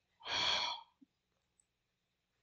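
A person sighing once: a single breathy exhale lasting about half a second.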